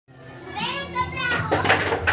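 High-pitched voices calling out, loudest in the second half, over a low steady hum.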